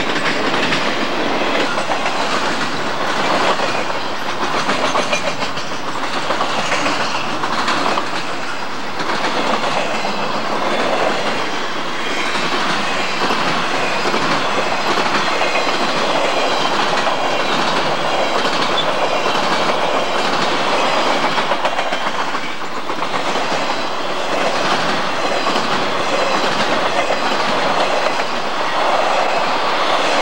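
Intermodal freight train cars rolling past close by: a steady, continuous noise of steel wheels running on the rails.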